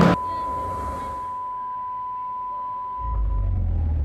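A single steady, high-pitched tone that holds for about three seconds and then fades away. A low rumble comes in near the end.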